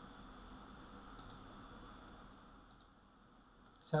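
A few light clicks of a computer keyboard as text on a slide is retyped: two pairs of clicks, about a second in and near three seconds, over a faint steady room hum.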